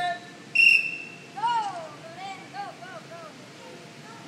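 A single short, shrill whistle blast signalling the start of the game. It is followed by children's high-pitched excited shouts as they run off.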